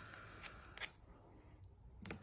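Faint paper rustling with a few soft ticks: a paper sticker being peeled from a sticker book and pressed onto a planner page.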